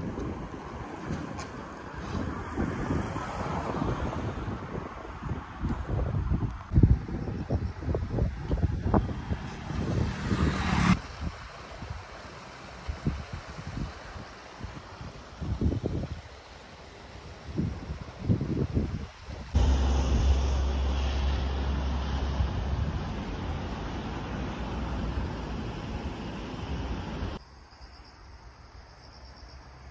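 Outdoor ambience from several short phone-recorded clips, mostly wind buffeting the microphone in uneven gusts. The sound changes abruptly between clips, about 11, 19 and 27 seconds in, and a heavy low rumble of wind runs for a few seconds from about 19 seconds.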